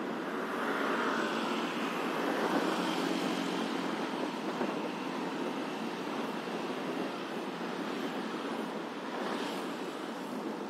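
Steady rushing noise of travel along a city street in traffic, road and wind noise mixed with the engines of nearby motorcycles and a bus, with no single event standing out.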